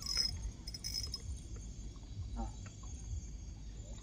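Quiet night ambience: a low rumble and faint high insect trilling, with a few light clicks in the first second, and a brief exclamation about halfway through.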